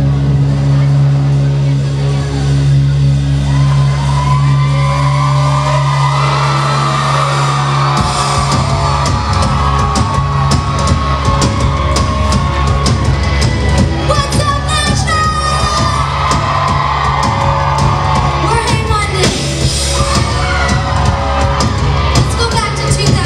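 Live pop-punk band in a club: a held low chord rings steadily for about eight seconds with vocals coming in over it, then the drums and guitars kick in at full volume while the audience yells and whoops.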